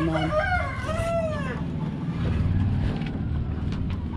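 A rooster crowing once, a call of about a second and a half with arching rises and falls in pitch, over a low steady rumble.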